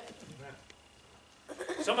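Speech only: a short, faint spoken "yeah", then about a second of near silence, then a man starts speaking near the end.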